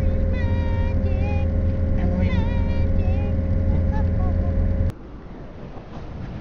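1983 RV's engine running at a steady road speed, a low drone with a steady whine over it, while a high-pitched voice sounds briefly over the engine in the first half. Just before the end the engine sound cuts off abruptly, leaving quieter outdoor ambience.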